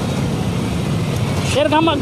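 A motor vehicle engine running with a steady low rumble. A man's voice starts near the end.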